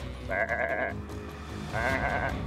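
Two short sheep bleats, one near the start and one near the end, over steady background music.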